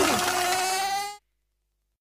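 Cartoon sound effect: a swooping tone that falls away, then a held tone that rises slightly and cuts off abruptly a little over a second in.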